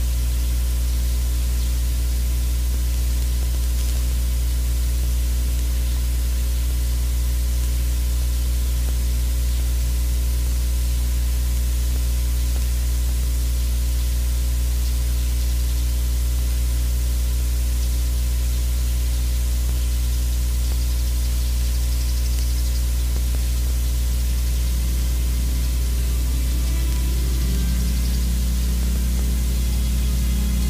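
Steady electrical hum with hiss, unchanging throughout, typical of a sound system's line noise with no one at the microphone. Faint music begins to come in during the last few seconds.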